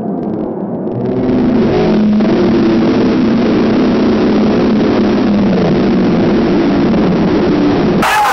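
Stadium crowd roaring as a late winning goal goes in. The roar swells about a second in and holds, many voices shouting at once.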